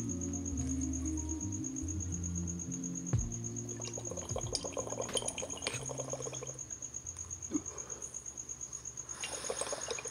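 Water bubbling in a glass dab rig as smoke is drawn through it, a rapid, even gurgle starting about four seconds in, over quiet background music.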